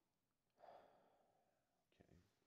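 Near silence with a faint sigh from a person close to the microphone about half a second in, fading away over about a second.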